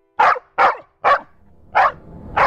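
A dog barking four times in sharp, separate barks, each under half a second long.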